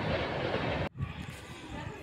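Steady rushing noise with a low rumble, like wind or handling noise on the microphone, that cuts off abruptly about a second in, leaving only faint hiss.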